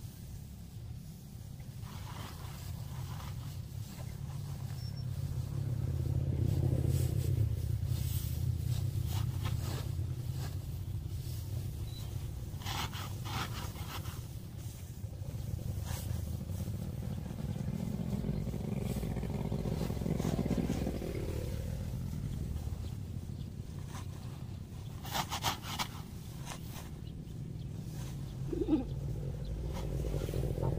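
Dry straw rustling and crunching as it is pushed by hand into woven sacks, with crackly spells about twelve seconds in and again about twenty-five seconds in, over a low steady rumble.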